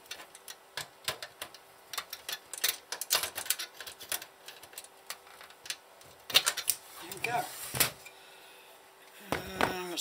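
Irregular light metallic clicks and taps of pliers doing up nuts on the metal chassis of a Sky+ HD receiver.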